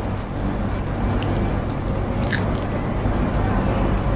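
A person chewing a mouthful of ice cream cone, with a couple of sharper crunches of the wafer about one and two seconds in, over a steady low hum.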